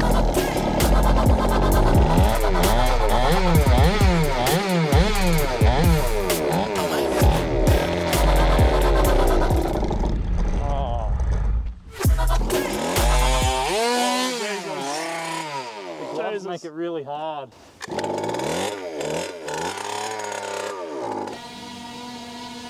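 Small two-stroke engine of a hopped-up petrol Go-Ped scooter running hard at high revs, its pitch rising and falling again and again. From about fourteen seconds in it sounds thinner, still swooping in pitch, then settles into a steadier high note near the end.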